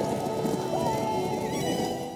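Film soundtrack of a cavalry charge: many horses galloping, with orchestral music over the hoofbeats. It fades out near the end.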